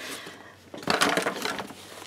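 Hardbound journals being handled and shifted on a tabletop: a run of light knocks and rustles starting about a second in.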